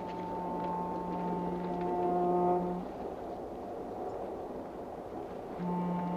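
Music cue of sustained low brass chords, voices entering one after another. The chord is held for about three seconds, then breaks off into a steady rumbling haze, and a new held chord begins near the end.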